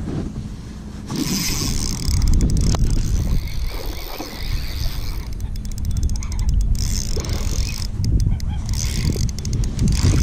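Wind rumble and clothing rubbing against a body-worn camera's microphone, with several runs of rapid clicks, while the angler scrambles on the bank.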